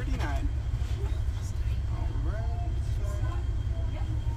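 Chrysler car's engine idling while stopped, a steady low rumble, with faint voices in the background.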